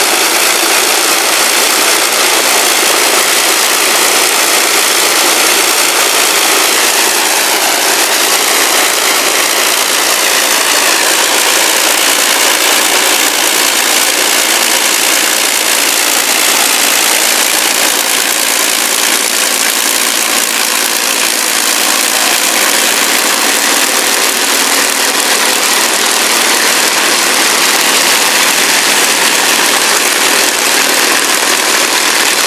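Avro Lancaster's Rolls-Royce Merlin piston engines running as the bomber taxis past, a loud, unbroken drone whose tone shifts slightly as the aircraft draws near.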